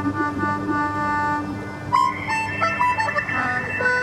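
Improvised electronic music: held synthesizer tones over a wavering low note, played through a portable speaker. About two seconds in, a Hammond 44 PRO keyboard harmonica joins with a high held tone and a run of notes stepping up and down.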